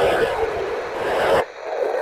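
Ham radio transceiver's speaker playing a crowded FM amateur satellite downlink: hiss with garbled, overlapping voices. It cuts off abruptly about one and a half seconds in.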